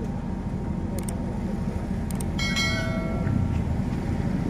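Steady low rumble, with a few light clicks and a brief bell-like metallic ring of several held tones about two and a half seconds in.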